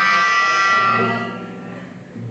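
Electric guitar chord ringing out after being struck, fading away slowly.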